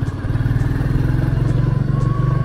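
Motorcycle engine running steadily as the bike is ridden along the road, with an even, rapid pulse from its exhaust.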